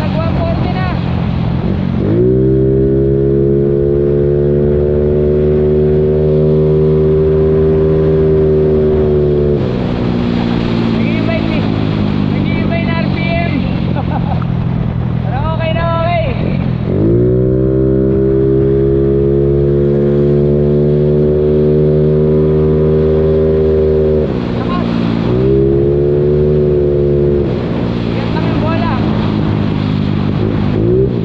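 A big-valve motorcycle engine pulling hard under full throttle: the revs climb and then hold at a steady high pitch for several seconds before dropping off. This happens twice, then once more briefly near the end.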